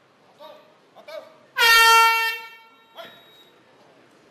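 A loud horn blast lasting just under a second, a single steady pitched tone, sounding about a second and a half in as the signal to start the round. Short snatches of voice come just before and after it.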